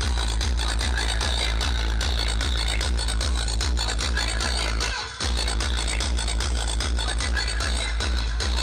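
Electronic dance music with a heavy bass beat, played loud through a large truck-mounted DJ speaker tower. The bass cuts out briefly about five seconds in, then the beat comes back.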